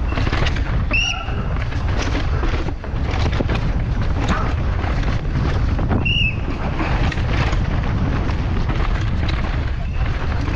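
Helmet-camera audio of a Pivot downhill mountain bike running a rough dirt race course at speed: steady wind buffeting the microphone, with a constant clatter of knocks and rattles from the bike over roots and rocks. Two short high-pitched chirps stand out, about a second in and again about five seconds later.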